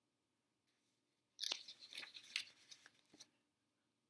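A picture book's paper page being turned by hand: a short crinkling rustle with a few light clicks, starting about a second and a half in and dying away under two seconds later.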